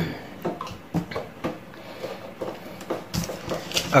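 Light, scattered clicks and taps of small plastic bottles and a plastic measuring cup being handled on a countertop, with a throat clear near the end.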